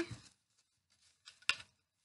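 Hands working ribbon through the strings of a cardboard loom: faint handling sounds and one sharp click about one and a half seconds in.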